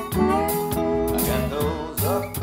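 Acoustic blues instrumental: slide guitar gliding between notes over an upright bass line, with a steady beat.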